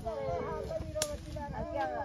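Women's voices talking in the background, with a single sharp snap about a second in.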